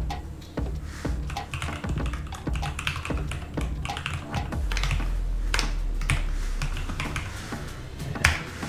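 Typing on a computer keyboard: a quick, irregular run of key clicks as a web address is entered. A low steady hum joins for a couple of seconds past the middle.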